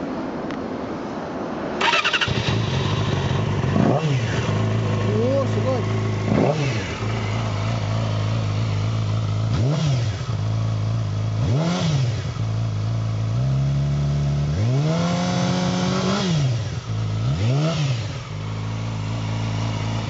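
Yamaha YZF-R6 sport bike's inline-four engine started about two seconds in, then idling steadily with about six quick throttle blips and one longer held rev around three-quarters through.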